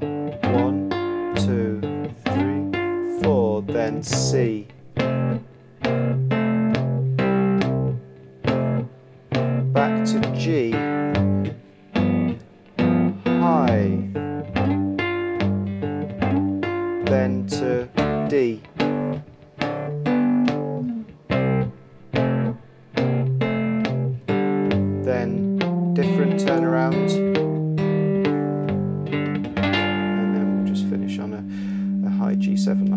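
Three-string cigar box guitar in open G (G-D-G) tuning, fingerpicked through a twelve-bar blues in fretted two-note chord shapes, with short slides into notes. It settles on a ringing final chord near the end.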